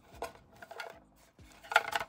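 Fingers flicking through a tightly packed row of plastic cash envelopes in a clear acrylic box, giving a quick run of faint light clicks and rustles.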